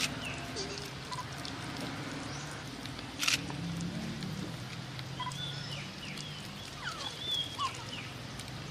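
Several short, high chirping calls over a steady low outdoor background, with one sharp click a little after three seconds in, which is the loudest event.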